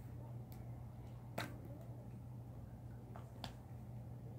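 Four small sharp clicks, the loudest about a second and a half in, from a plastic lipstick tube being uncapped and handled, over a steady low hum.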